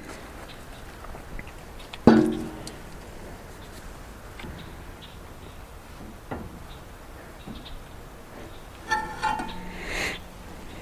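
A single metal clunk with a short ring about two seconds in, from the wood chipper's steel flywheel and blade assembly being pushed by hand to check its play against a dial indicator. A few faint ticks follow, then a brief squeaky chatter near the end.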